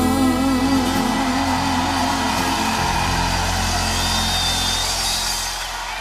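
Live pop band holding a sustained chord under a steady wash of stage noise, the sound fading down near the end.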